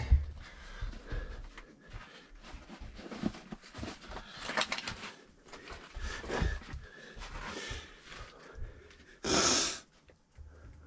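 A person crawling over a rock: irregular scuffs and scrapes of hands, knees and clothing on rough lava rock, with heavy breathing. A louder rush of noise lasting about half a second comes near the end.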